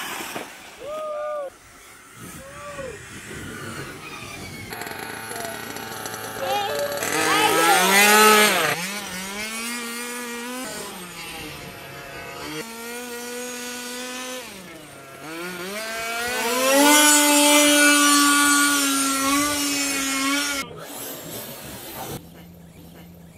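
Radio-controlled buggies racing on a dirt track, their motors rising and falling in pitch as they accelerate and back off. Several cars are heard together, loudest as they pass close by about 8 s in and again from about 16 to 21 s. The sound changes abruptly a few times.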